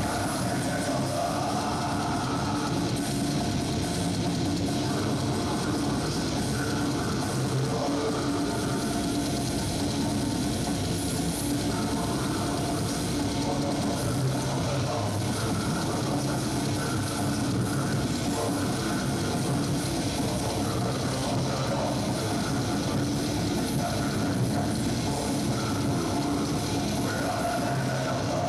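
Death metal band playing live: distorted electric guitars and drum kit in a dense wall of sound at a constant loud level.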